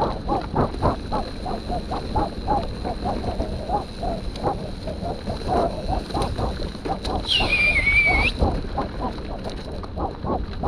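Hard, rhythmic panting at about three breaths a second over the rumble of mountain-bike tyres on a dirt trail. About seven seconds in, a high squeal lasts about a second.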